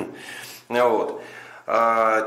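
Only speech: a man speaking Russian in short phrases with a brief pause between them, in a small room.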